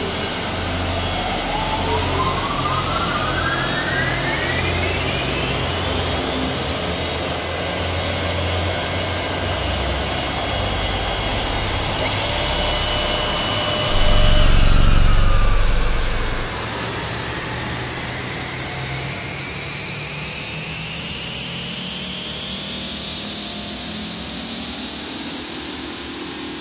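Jet aircraft engine noise running steadily, with whines that rise in pitch as the engines spool up. A louder low rumble lasts about two seconds midway.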